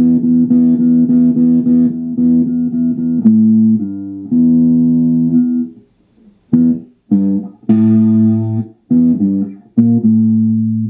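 Stratocaster-style electric guitar playing a riff: a run of quickly picked notes for about the first five and a half seconds, then short clipped notes and chords with brief silences between them.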